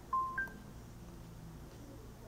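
Two short electronic beeps in quick succession about a quarter second apart, the second higher in pitch, over faint room noise.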